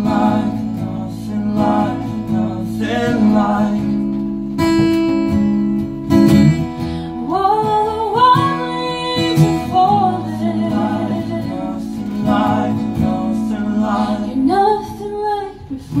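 Live country band playing: strummed acoustic guitars under sung lead and harmony vocals, with a long held chord about five seconds in.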